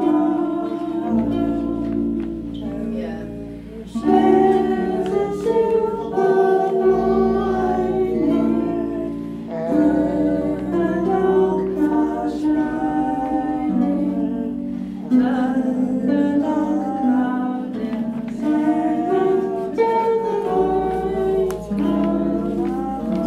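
Music: a song with singing over a plucked-string accompaniment, its low chords changing every few seconds.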